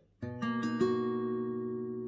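Capoed acoustic guitar fingerpicked as a slow arpeggio: a bass note plucked with the thumb, then three higher strings (D, G, B) picked one after another about a fifth of a second apart, all left to ring together.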